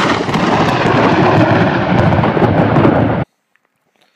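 Loud, continuous rolling rumble of thunder that cuts off suddenly a little over three seconds in.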